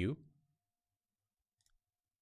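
Near silence as the voice trails off, with a faint brief click about one and a half seconds in.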